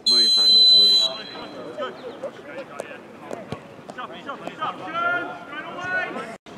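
A referee's whistle blown for kick-off: one loud, steady, shrill blast lasting about a second. Then voices call out across the pitch, with a few sharp thuds of the ball being kicked.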